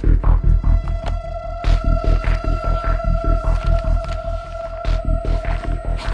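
Tense film background score: a fast, steady throbbing bass pulse with a sustained high drone tone that comes in just after the start.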